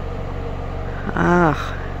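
A steady low engine hum, like a vehicle idling, with a brief voiced sound a little past halfway.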